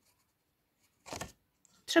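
Mostly quiet, with one short rustle of a pencil moving on a paper worksheet about a second in.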